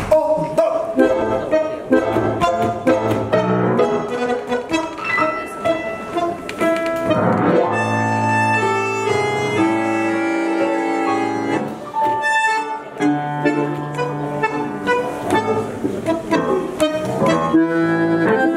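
Bandoneon and piano playing a tango introduction: clipped, rhythmic notes for the first several seconds, long held chords around the middle, then the rhythmic playing picks up again.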